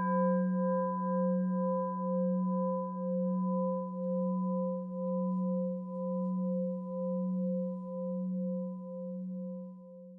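Meditation bell of the singing-bowl kind, struck once just before, ringing on with a deep hum and a few higher overtones. It wavers in loudness about once a second as it slowly fades.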